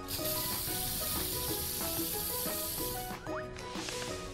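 Cartoon spray-paint can hissing in one steady spray of about three seconds that stops suddenly, over light background music.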